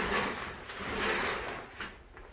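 A shower curtain being drawn aside along its rod, the curtain hooks scraping and sliding in two pulls, with a short click near the end.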